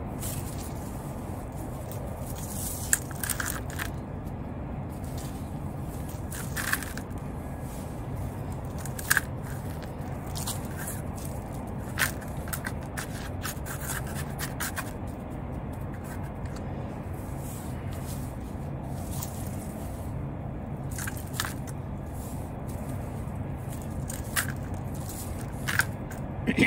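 Hands scooping loose garden soil and pressing it into a plastic bucket, with scattered soft scrapes and crackles every few seconds over a steady low background noise.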